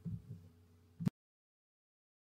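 A few soft low thuds over a faint steady hum, then a sharp click about a second in, after which the sound cuts to dead silence.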